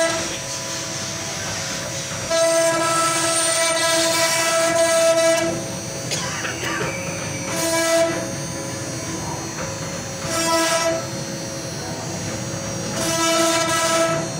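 CNC router spindle running at high speed as its bit carves relief into a wooden door panel: a steady high whine, with a louder pitched cutting whine that swells several times as the bit bites into the wood, the longest stretch about three seconds from two seconds in.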